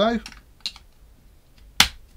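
Clicks as 18650 batteries and the magnetic battery door are fitted into a dual-18650 box mod: a faint click about two-thirds of a second in, then one sharp, loud click near the end.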